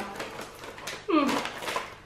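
Faint crinkling of a plastic snack bag and crackling of a crisp seaweed snack sheet being broken off. About a second in comes a woman's drawn-out wordless vocal reaction, its pitch dipping and then rising.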